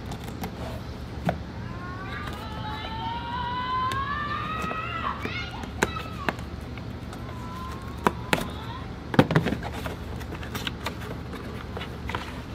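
A knife cutting the packing tape on a small cardboard box, with scraping, cardboard rustle and sharp clicks and knocks, several in quick succession about nine seconds in. Near the start, a rising whine runs for about three seconds.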